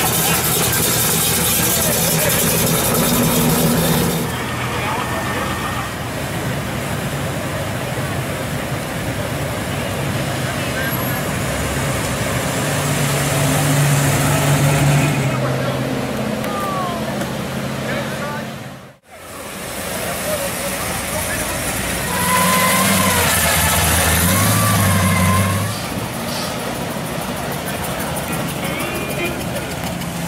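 Classic cars' engines running as they drive slowly past, over a steady hubbub of crowd voices, with a brief dropout about two-thirds of the way through.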